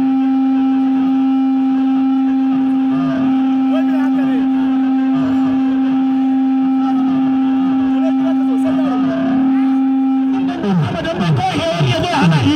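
A loud, steady tone held at one pitch for about ten and a half seconds, with voices from the crowd under it. The tone cuts off shortly before the end, and busier voices and shouting follow.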